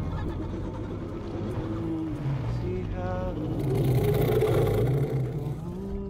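The dragon Vermithor growling: a deep, rumbling growl that swells into a louder, breathy rush about halfway through, then settles back.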